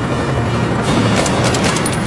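Background music over a running car, with a quick run of sharp cracks about a second in: a rifle fired out of the open passenger window of the car.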